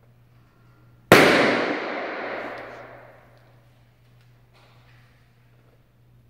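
A rubber balloon bursts once, about a second in, with a sharp pop followed by a long reverberant tail that dies away over about two seconds in a large hard-walled stairwell atrium. The pop is the impulse used to record the room's impulse response.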